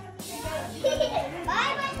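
A young child's voice babbling and calling, with rising calls near the end, among other voices.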